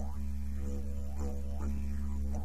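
Didgeridoo music: a steady low drone with rhythmic, sweeping overtone pulses about twice a second.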